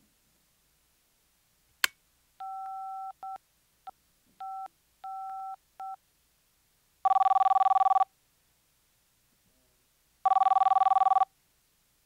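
A click, then a handheld phone's keypad beeping as a number is dialled: several two-tone touch-tone presses of uneven length. Then the call rings twice, each ring a buzzing tone about a second long, some three seconds apart.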